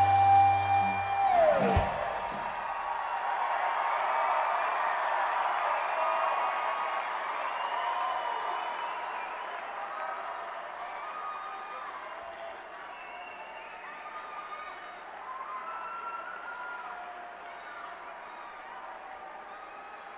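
An electric slide guitar holds the final note of a song with the band, then the slide drops down the neck in a falling glide and the music stops about a second and a half in. An arena crowd then cheers, whoops and applauds, slowly dying down.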